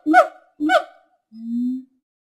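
Gibbon calling: the last two quick, pitch-gliding hoots of a rapid series in the first second, then after a pause one lower, longer note near the end.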